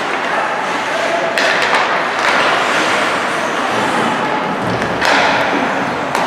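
Ice hockey play in an echoing arena: skate blades scraping on the ice, with sharper surges of scraping about a second and a half in and again near the five-second mark, a few stick or puck knocks, and players' voices calling out.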